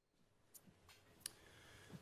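Near silence, with three faint, sharp clicks in the second half and a faint room hiss coming up about half a second in.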